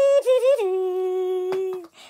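High-pitched humming voice: a short wavering note, then a lower note held steady for over a second, which stops just before the end.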